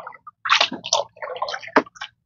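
Water splashing and sloshing in short, irregular bursts, with a sharp click near the end.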